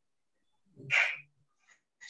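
A person sneezing once, a short sharp burst about a second in.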